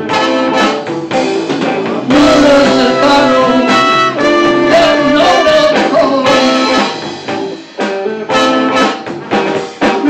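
Live blues band playing with electric guitar, drums, trumpet and saxophone. Short stabbing hits at the start, then held horn lines over the full band for several seconds, and stabbing hits again near the end.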